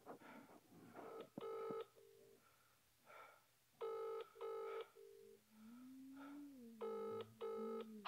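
Faint British-style double-ring ringback tone from a mobile phone's earpiece: three pairs of short rings about three seconds apart, the call ringing out while it waits to be answered.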